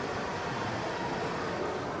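Steady background noise: an even hiss with no distinct sounds in it, typical of room tone from a fan or air conditioning.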